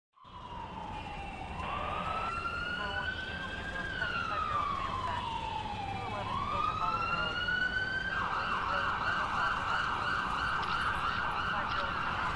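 Emergency-vehicle siren wailing in slow rises and falls, then switching about eight seconds in to a fast yelp, over a steady low rumble.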